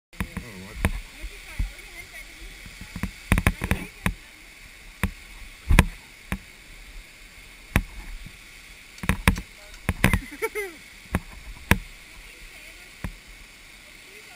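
Irregular sharp knocks and clicks, about one or two a second, from abseiling gear on the rope and the camera bumping against wet rock during a descent of a waterfall rock face, over a steady rush of falling water.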